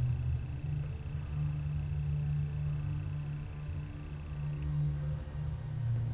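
Low, steady droning from a horror film's soundtrack, with a faint thin high tone over it that stops about two-thirds of the way in.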